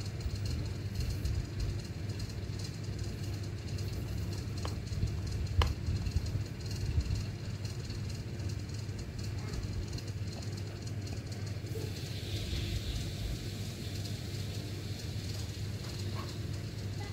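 Steady low background rumble, with two light clicks about five seconds in and a brief hiss near the end.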